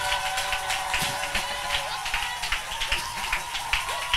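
A congregation clapping irregularly over a sustained musical chord, applauding the groom's acceptance of his wedding vows.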